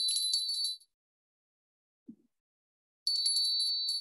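Small bells tinkling with a high, ringing jingle: one short spell at the start and another from about three seconds in.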